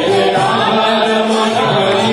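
Devotional chanting (kirtan): voices singing a chant to a melody in long held notes.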